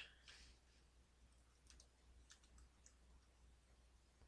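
Near silence with a few faint, sparse clicks of typing on a computer keyboard as a web address is entered.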